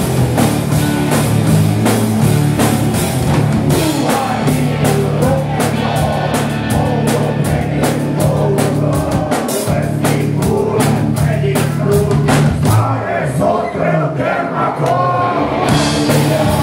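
Live rock band playing loud: distorted electric guitars, bass guitar and a drum kit keeping a steady beat, with a singer's voice over them.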